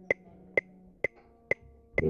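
A metronome clicking at a steady tempo, four sharp ticks about half a second apart, setting the beat for a sousaphone playing test.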